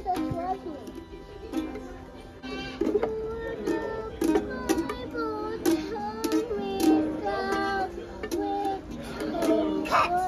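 Children strumming small ukuleles, with a string stroke every second or so, and a child's voice singing and talking over them.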